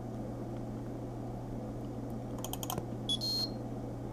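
Steady low electrical hum, with a quick run of clicks about two and a half seconds in and a short high-pitched beep just after three seconds.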